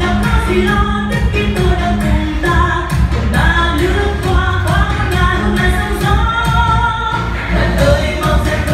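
Upbeat pop song playing loud: singing over a steady dance beat.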